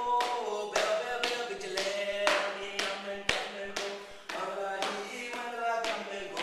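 Song for a traditional Aboriginal dance: a voice chanting over sharp, evenly spaced percussive strikes about two a second, with a steady low drone underneath from just after the start.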